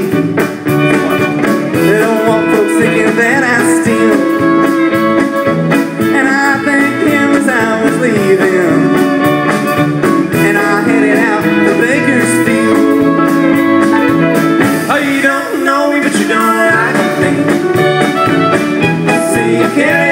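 Live country band playing an instrumental break between verse and chorus, with guitar over a steady bass and drum beat.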